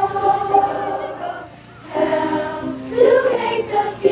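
Children's choir singing with keyboard accompaniment, the voices holding long notes with a brief breath between phrases about halfway through.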